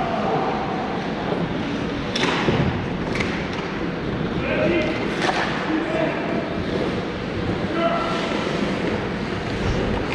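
Ice hockey play in an indoor rink: a steady wash of skates on the ice with sharp stick-and-puck knocks about two, three and five seconds in, and players' voices calling out.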